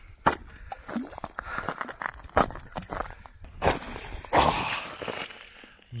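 Boots crunching on snow-covered lake ice: several irregular footsteps.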